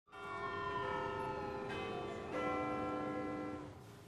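Bells struck three times, the first at the start and two more close together about halfway through, each note ringing on and fading away near the end.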